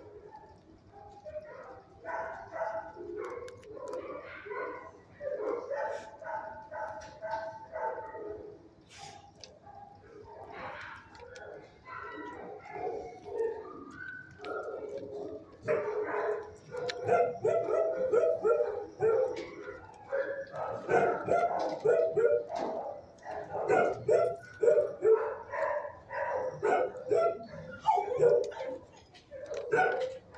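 Dogs barking repeatedly in shelter kennels, the barks getting louder and coming faster about halfway through.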